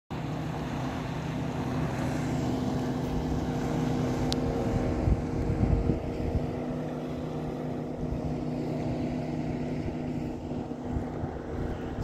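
Small motorboat's engine running at speed as the boat passes along the shore: a steady drone, a little louder in the middle, then easing as the boat moves off. Gusts of wind hit the microphone about five seconds in.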